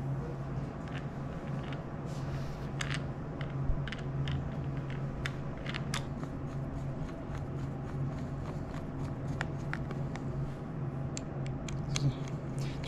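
Scattered light clicks and scrapes of hands and a screwdriver working on the plastic brake fluid reservoir and its cover on a Ski-Doo snowmobile's handlebar, over a steady low hum.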